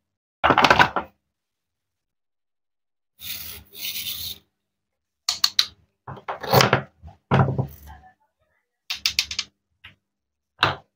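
Toy fruit being cut on a wooden cutting board: a wooden play knife parts a toy lemon's Velcro-joined halves with raspy tearing and rubbing, between knocks and clicks of wooden pieces set down on the board.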